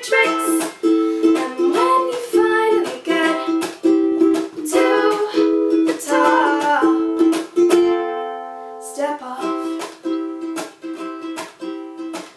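Ukulele strummed in a steady rhythm, chords without singing. About eight seconds in, one chord is left to ring and fade for about a second before the strumming picks up again.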